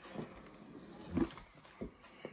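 Quiet handling of a cardboard sneaker box as it is opened, with two soft bumps, one about a second in and a smaller one near the end.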